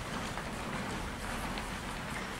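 Steady room hubbub of a gym full of wrestlers moving about on the mats, an even background din with no distinct event.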